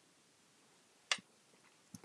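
One sharp click a little past halfway, with a fainter tick near the end, against quiet room tone: small contact sounds from hand beadwork with a needle and seed beads.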